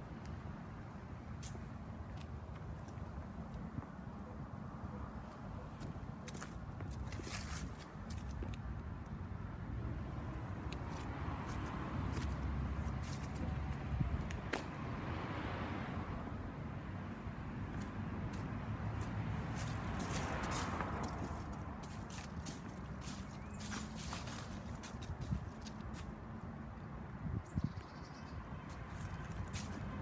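Footsteps crunching and crackling through dry fallen leaves as someone walks around a parked car, over a steady low rumble. Two broader swells of noise rise and fall about halfway through.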